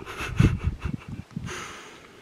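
Labrador retriever sniffing at a treat on the ground: a quick run of short sniffs, then a softer hiss near the end.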